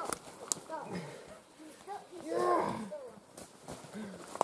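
Men's voices calling out indistinctly, loudest about two and a half seconds in. Scattered footsteps crunch through dry leaf litter on the forest floor.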